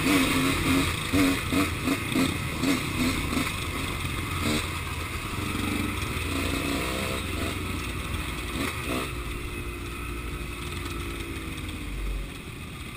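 Dirt bike engine running at low speed on a rough grass track. Its note pulses with the throttle for the first few seconds, then runs steadier with small rises and falls in pitch.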